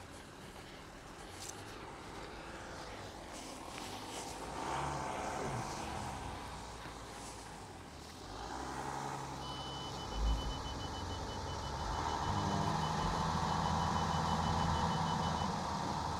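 2019 Volkswagen Touareg's engine pulling under load as the SUV climbs over a bump on rough grass, growing louder through the second half, with a thump about ten seconds in. A fast, even run of high beeps sounds over it for the last six seconds.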